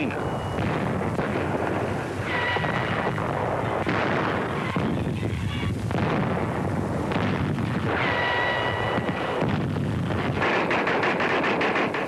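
Battle sound on an old newsreel soundtrack: a continuous din of artillery and gunfire with shell bursts. Two brief high steady whistling tones sound over it, a couple of seconds in and again about eight seconds in.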